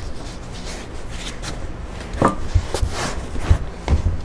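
Dough being kneaded inside a silicone kneading bag on a wooden cutting board: the bag rustles and rubs as it is worked, with several dull thumps on the board in the second half.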